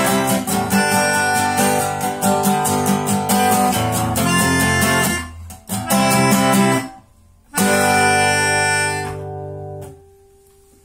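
A small harmonica blown in loud, reedy chords that stop and restart with each breath, breaking off about five and seven seconds in, the last breath fading away near the end.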